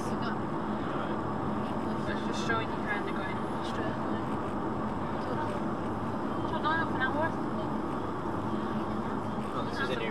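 Steady road and engine noise inside a moving car's cabin at main-road speed, recorded by a dashcam. Faint voices murmur a few times.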